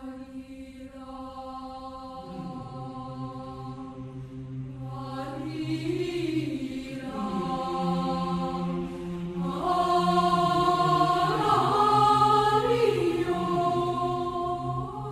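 Youth mixed choir singing sustained chord notes. A single held line at first, lower voices entering about two seconds in and more parts joining, with pitches sliding between notes. The sound grows steadily louder and is fullest near the end.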